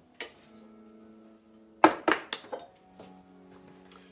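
A small ceramic bowl clinks against the steel bowl of a Kenwood stand mixer as salt is tipped in. There is one clink just after the start and a quick run of three near the middle, the first of those the loudest, over soft background music with held notes.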